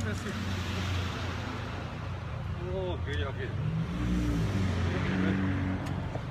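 Cars in slow street traffic, their engines running with a steady low hum, and voices calling out about three seconds in.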